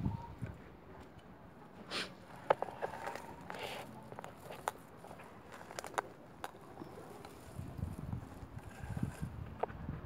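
Quiet outdoor ambience with scattered faint clicks and a few soft low thuds toward the end.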